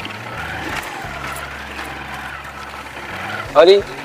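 Small motorcycle engine running steadily at low speed, a low hum that shifts pitch a few times. Near the end a man calls out "arre".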